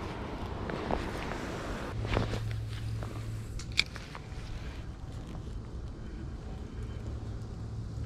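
Spinning rod and reel handled while casting and retrieving a lure: a swish about two seconds in, then a single sharp click a little before four seconds, over a low steady hum that comes and goes.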